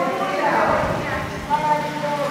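A woman's raised voice holding long notes, as in sung or chanted prayer, broken about half a second in by a short burst of noise.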